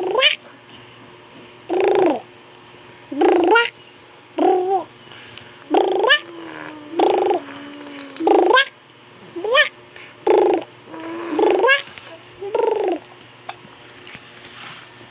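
About ten short, high-pitched vocal calls, roughly one a second, several gliding sharply up in pitch.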